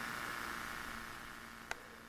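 Faint steady hiss of the recording's background noise, slowly fading out, with a single small click near the end.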